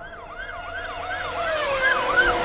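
Siren yelping: a rapid rising-and-falling wail, about four sweeps a second, growing louder.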